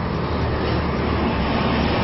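Steady outdoor background noise with a low rumble and no distinct events.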